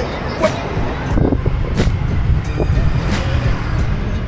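Low rumble of a city bus and street traffic, with a few short knocks.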